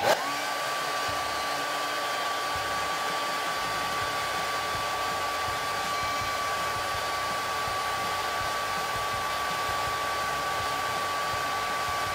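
White Conair handheld hair dryer switched on, its whine rising briefly as it spins up, then running steadily at one pitch over the even rush of air.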